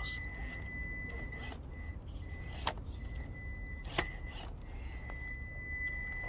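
A Traxxas TRX4M 1/18-scale RC crawler's small brushed electric motor and geartrain whining at a steady high pitch as it crawls across rocks. The whine drops out briefly and resumes with the stop-start throttle. A few sharp clicks of the wheels and chassis knocking on stone sound over it.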